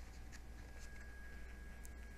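Faint rustling of a hardback book's paper pages as it is handled, with a few soft brushes and a small click near the end, over a steady low hum.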